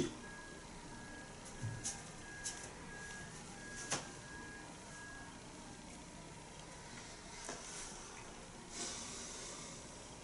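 Faint room hiss with a string of short, high electronic beeps, about two a second, that stop about halfway through. A few soft clicks come from a smartphone being handled and tapped.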